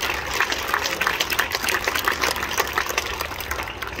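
Audience applauding: many hand claps blending into a steady wash.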